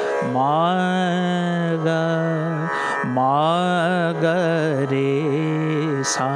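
A male Hindustani classical vocalist singing a phrase of Raag Bageshwari: two long held notes, each sliding up into the pitch, the second ending in a quick wavering ornament.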